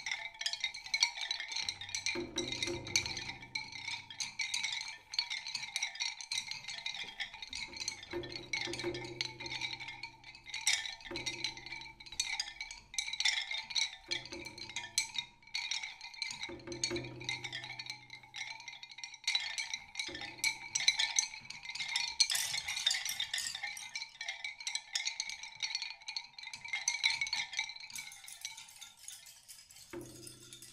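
Experimental percussion music: a dense stream of quick taps and clicks over steady ringing high tones. A low humming drone comes and goes every few seconds and mostly drops away in the second half.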